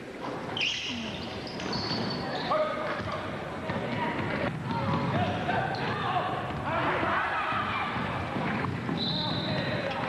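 Basketball dribbled on a hardwood gym floor, among crowd voices, with short high squeaks about a second in and again near the end.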